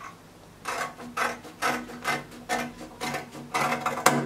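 Dressmaking scissors snipping through fabric: a run of about seven snips, roughly two a second, starting just under a second in.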